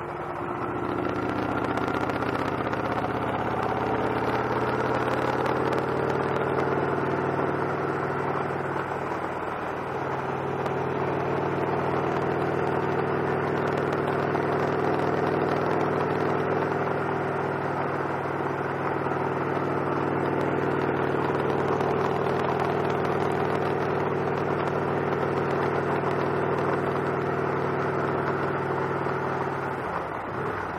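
Victory Cross Roads motorcycle's V-twin engine running while riding, rising in pitch over the first few seconds as the bike accelerates, then holding a steady cruising note with a slight dip about ten seconds in.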